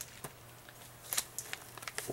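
A baseball card in a rigid plastic top loader being handled, giving a handful of light clicks and taps, the sharpest about a second in.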